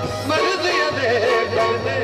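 Live Punjabi folk song: a male vocalist singing ornamented, wavering lines into a microphone over a steady hand-drum beat and keyboard accompaniment.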